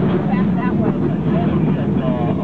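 Cable car running on its track as its cable hauls it uphill: a steady low rumble, with people's voices over it.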